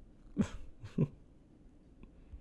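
A man chuckling: two short, soft laughs about half a second apart.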